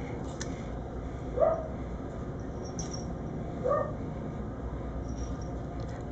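A dog barking twice, single short barks about two seconds apart, over a steady background hum.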